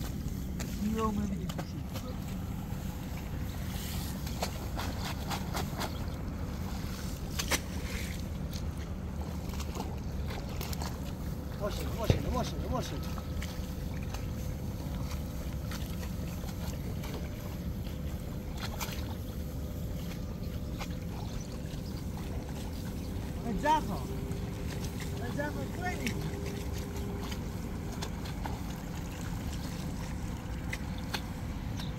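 Steady wind noise on the microphone over soft splashes of water and mud as rice seedlings are pushed into a flooded paddy, with faint voices now and then.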